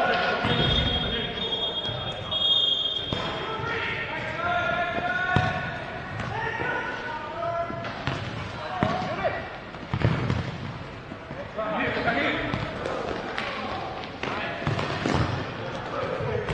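Futsal ball being kicked and bouncing on an indoor court, a knock every second or so, with players' voices calling across the play.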